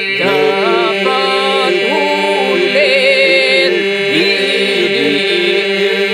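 Albanian Lab iso-polyphonic folk singing by a vocal group: voices hold a steady drone (the iso) while the lead voices sing wavering, ornamented lines above it.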